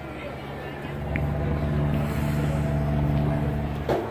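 A motor vehicle's engine running steadily close by, a low hum that grows louder about a second in.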